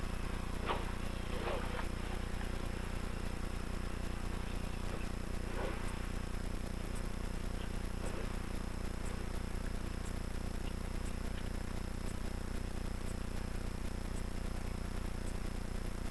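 Lada VFTS rally car's engine running steadily at low revs as the car rolls slowly, heard from inside the cabin.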